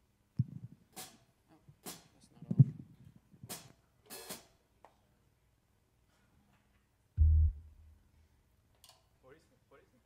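Scattered clicks and knocks from instruments and gear being handled on a bandstand, the loudest a thump about two and a half seconds in, then a short low thud about seven seconds in.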